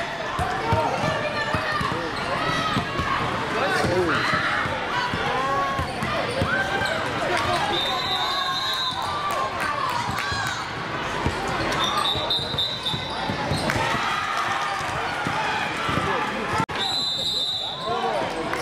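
A basketball dribbled and bouncing on a hardwood gym floor, among many voices calling out across the court. A few brief high squeaks come in along the way.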